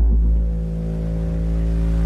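A steady, deep, low drone with a row of evenly spaced overtones, holding one pitch with no rhythm or beat.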